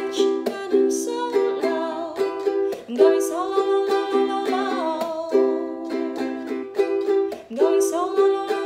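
Ukulele strummed in a steady chord rhythm, with a woman singing along in held notes that waver in pitch.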